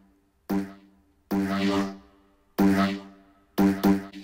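A synthetic growl bass sample in Logic Pro X's Quick Sampler, triggered by four short key taps at the same pitch. In Classic mode each note plays only while the key is held and cuts off on release, so only the opening of the sample is heard each time.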